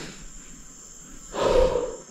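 A downed, injured cow lets out one short groan about one and a half seconds in, the distress of an animal that cannot get up. Insects hum steadily underneath.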